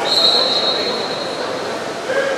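A referee's whistle blown in one steady high blast in the first second of play, fading away, over a steady noisy background of the water polo match.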